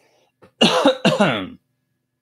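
A man coughing and clearing his throat once, about half a second in, lasting about a second.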